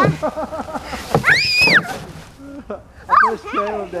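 A girl laughing in quick bursts, then letting out one high-pitched scream lasting about half a second, a little over a second in, as she jumps off a play structure into deep snow; more laughing and voices follow near the end.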